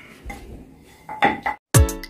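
A few light metallic clinks from small steel bracket plates and screws being handled and set down on pine bed boards. Near the end, background music with a heavy, regular kick-drum beat starts and becomes the loudest sound.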